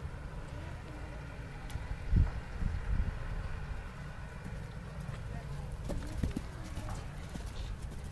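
Hoofbeats of a horse cantering on a sand arena, with a louder thump about two seconds in, over a steady low rumble.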